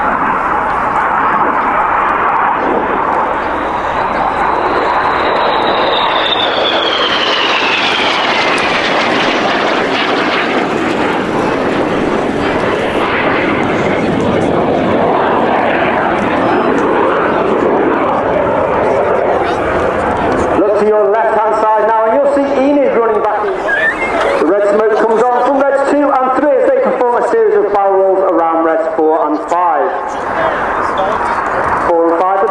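BAE Hawk T1 jet with its single Adour turbofan flying past: a steady jet roar with a high whine that falls in pitch as it goes by, about five to nine seconds in. From about twenty seconds in, the jet noise drops away under a commentator's voice over a public-address horn loudspeaker.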